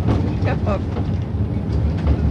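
Steady low rumble of a coach bus's engine heard from inside the passenger cabin, with a woman's brief laughing words over it.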